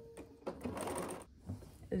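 Bernina B 770 Quilter's Edition Plus sewing machine stitching a seam in a short run of about a second near the middle, then stopping.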